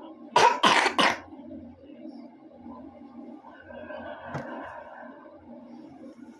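Three quick coughs in a row, about half a second in.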